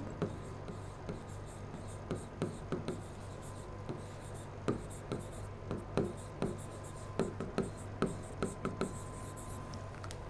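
Pen tip tapping and scratching on a digital writing board as a word is written by hand: faint, irregular little ticks over a low steady hum.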